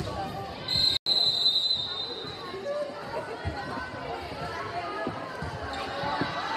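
A referee's whistle gives one high, steady blast about a second long, shortly after the start, over the steady chatter of the crowd.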